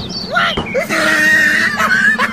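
A shrill, high-pitched cry: a few short curving calls, then one high note held for about a second near the end.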